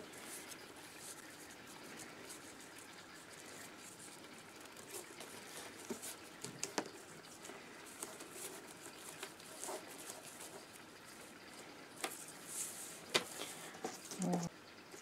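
Faint rustling and scraping of rolled paper tubes being handled, with a few light clicks and taps, as a woven row of paper-tube stakes is worked free of a perforated plastic strip.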